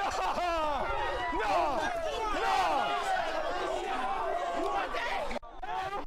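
Overlapping voices of a crowd of men talking and shouting at once. The sound cuts off abruptly about five seconds in, then voices pick up again.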